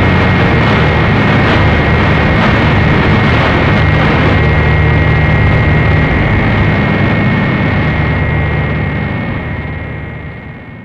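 Harsh noise music: a dense wall of distorted noise with a steady high whining tone and a low droning rumble underneath, fading away over the last few seconds.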